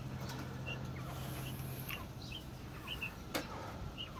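Young quail giving scattered faint, short high chirps, some in quick pairs, with one sharp click a little past three seconds in.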